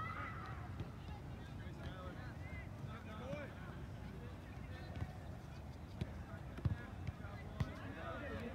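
Distant voices of players and spectators calling out across an open soccer field, over a steady low rumble. A couple of sharp knocks stand out near the end.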